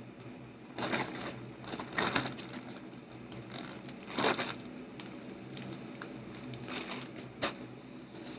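Clear plastic zip bag of rubber bands crinkling as it is handled, in several short rustling bursts, with one sharp click near the end.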